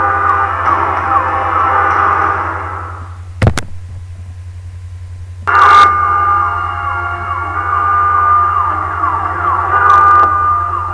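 Car alarm sounding: electronic tones with repeated falling sweeps over a low hum. It cuts out about three seconds in and starts again suddenly halfway through.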